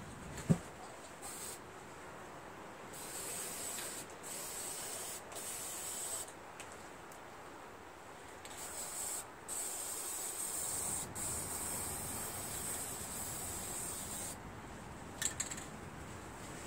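Aerosol spray paint can hissing in several bursts of different lengths with short pauses between them, as black paint is sprayed onto a steel seat bracket. A single sharp click comes about half a second in.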